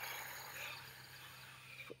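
A woman's long, slow breath through pursed lips, fading away gradually, taken as a demonstration breath in a breathing exercise. Crickets chirr faintly and steadily in the background.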